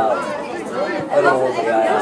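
Several voices talking over one another, a steady chatter with no single clear speaker.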